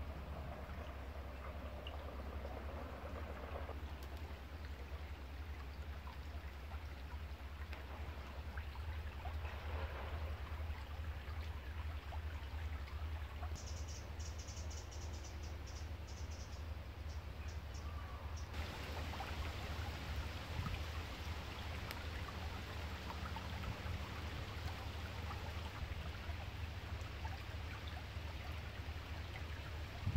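Shallow brook trickling and babbling over a pebble bed, with a steady low rumble underneath. The water grows brighter and hissier about two-thirds of the way through, and a brief run of rapid high ticks comes around the middle.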